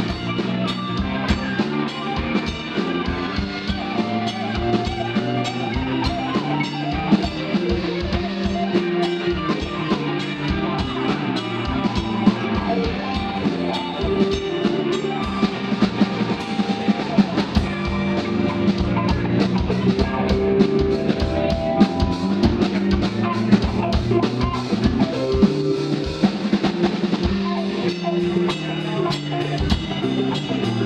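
Live rock band playing a song through amplifiers: electric guitars over a steady drum-kit beat.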